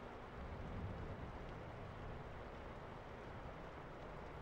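Faint, steady microphone hiss with a low rumble: room tone.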